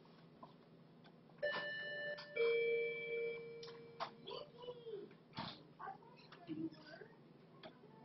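Electronic two-note chime in a doorbell-style ding-dong: a higher note, then a lower one about a second later that rings on and fades over about a second and a half.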